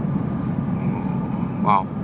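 Steady low engine and road noise heard inside the cabin of a moving car.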